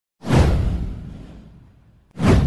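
A whoosh sound effect with a deep low boom. It starts suddenly a moment in, sweeps down in pitch and fades out over about a second and a half.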